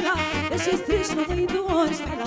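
Live Romanian folk music from a band with saxophone, accordion and keyboard: an ornamented, wavering melody line over a steady bass beat.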